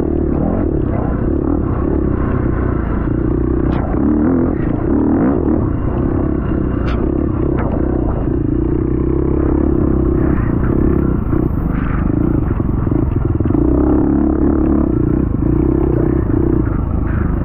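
Off-road dirt bike engine running hard along a trail, a loud steady drone that wavers a little with the throttle, with a few sharp clicks and clatter from the bike.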